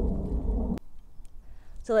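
Low rumbling wind noise buffeting the microphone, cut off abruptly just under a second in; a quieter stretch follows before a woman starts speaking near the end.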